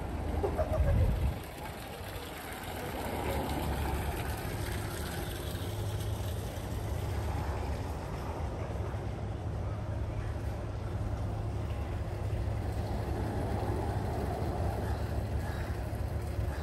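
Outdoor street ambience: a steady low rumble, with a louder low burst about a second in, and a faint background haze.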